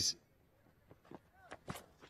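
Quiet cricket-ground sound, then a few short sharp knocks in the last second. The loudest is the bat meeting the ball on a checked shot.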